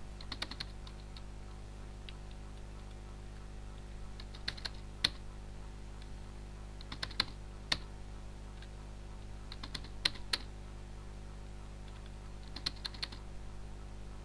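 Computer keyboard keys tapped in five short bursts of a few keystrokes each, roughly every two and a half seconds, over a steady low hum.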